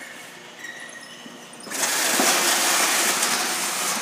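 Case sealer taping a cardboard box: after a quiet first couple of seconds, a loud steady hiss as the packing tape unwinds from the roll and is laid onto the box while the machine drives it through.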